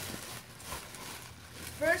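Clear plastic packaging rustling and crinkling as it is handled and pulled open around a scooter.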